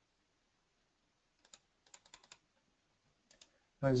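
Faint clicks of a computer keyboard and mouse: one click about one and a half seconds in, a quick run of four or five clicks around two seconds, and two more just after three seconds.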